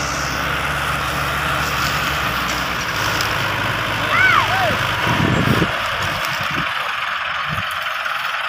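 Farm tractor engine running as it hauls a trolley loaded with sugarcane. About four seconds in there is a short rise-and-fall call, and the low engine sound drops away about six seconds in.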